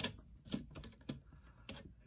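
Finger tapping on the thin, hollow plastic of a cheap toy robot's legs, giving a string of light, uneven clicks. The plastic is super thin and super cheap.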